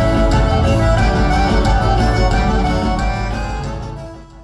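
Live band playing gaúcho dance music through the hall's PA, with a steady bass beat; it fades out near the end.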